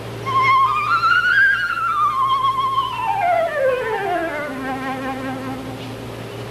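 Concert flute played with vibrato, climbing briefly and then running down through its range to end on a long-held low note, demonstrating the instrument's compass from high to low.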